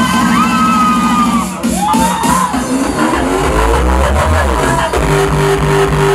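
Loud electronic dance music from a DJ set playing over a club sound system. About a second and a half in the track breaks, a rising sweep builds, and a new section with a steady pulsing beat starts near the end.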